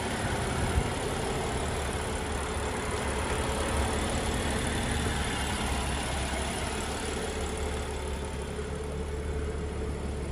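A 2018 BMW M2's turbocharged 3.0-litre inline-six idling steadily, heard close with the hood open.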